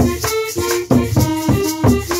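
Cumbia played live on a button accordion, a hand drum and maracas: the accordion plays a melody over a steady beat of drum strokes and a rhythmic maraca shake.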